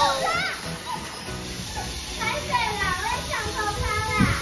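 Several voices calling out over one another in short rising and falling cries, with music underneath.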